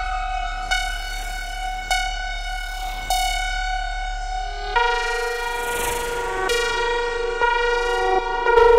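Serge Paperface modular synthesizer, played from its touch keyboard through added reverb: sustained, buzzy, horn-like tones that step to a new note about every second. A low hum underneath drops out about halfway, and a hissy swell comes in just after.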